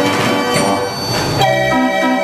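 Band organ playing, its pipes sounding held chords. The first second and a half is a dense, clattery blur of notes; after that the chords ring out clean and sustained.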